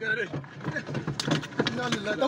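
Several people's voices calling out around a car, over the car's steady running noise, with a few short knocks, recorded on a phone from inside the car.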